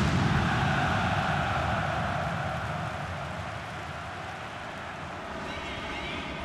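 Football stadium crowd cheering and clapping after a home goal, the noise slowly dying down.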